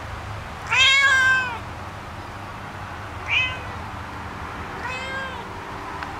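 A cat meowing three times: a long, loud meow about a second in, a short one in the middle, and a fainter one near the end.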